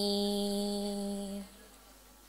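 A woman singing a syi'ir, a Javanese devotional chant, holding one long steady note at the end of a line. The note ends about one and a half seconds in.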